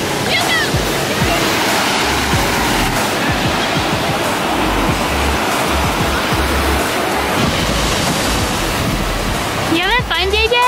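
Waves breaking on a sandy shore: a steady wash of surf noise, with background music's bass line running underneath.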